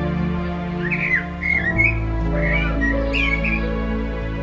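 A common blackbird gives a few short song phrases, about one to three and a half seconds in, over instrumental music with low sustained notes.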